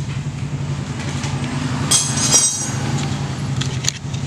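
A steady low mechanical hum, like a motor running in the workshop, with a sharp metallic clink about two seconds in and a few light ticks near the end.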